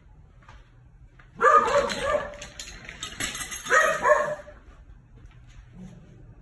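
A crated dog barking in two bursts, the first about a second and a half in and the second around four seconds in.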